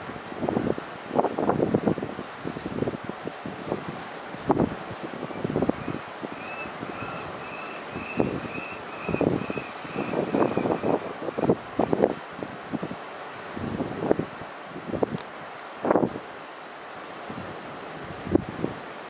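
Wind buffeting the microphone in irregular gusts. In the middle, a run of about ten short, high chirps, roughly two a second, sounds over the wind.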